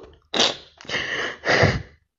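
A woman sobbing: three short, breathy crying bursts.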